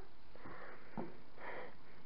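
A person sniffing a scented bath pearl to identify its smell: two short breathy sniffs, about half a second and a second and a half in, with a faint tap between them.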